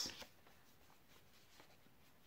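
Near silence: room tone, with a few faint ticks from a paper record sleeve being handled.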